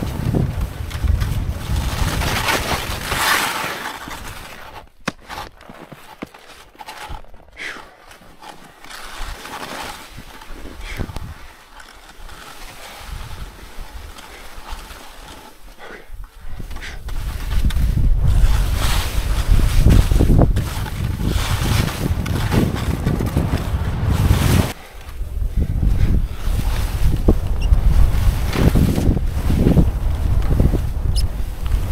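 Wind buffeting an action camera's microphone as a skier descends, with skis hissing and scraping over snow through the turns. The rush drops away for a long stretch in the middle, then comes back strongly with a brief dip later on.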